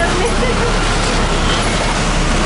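Steady, loud engine and road noise heard from inside the cab of a heavy vehicle, a bus or truck, as it drives over a rough, rocky road.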